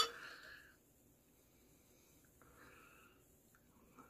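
Beer pouring from a glass bottle into a tilted pint glass: a faint, soft trickle. The ring of a glass clink fades out at the very start.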